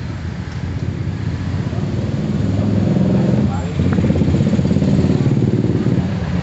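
A motorcycle engine running, growing louder from about two seconds in and staying loud.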